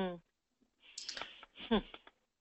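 A short murmured 'mm' at the start. After a pause, soft clicks and breathy noise come in, with a brief falling hum near the end.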